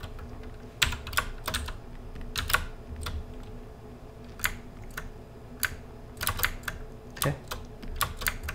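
Computer keyboard keys and mouse buttons clicking irregularly: about a dozen sharp clicks, mostly in small clusters.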